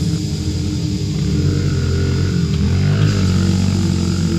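Honda CRF50 pit bike's small single-cylinder four-stroke engine running steadily under throttle.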